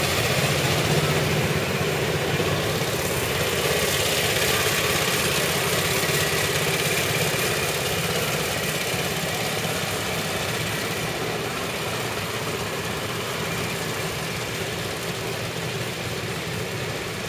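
Small engine of a replica antique ride car running steadily, slowly fading as the car drives away along its track.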